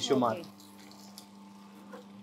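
Electric sugarcane juice machine running with a steady low hum as a cane stalk is fed through its steel crushing rollers.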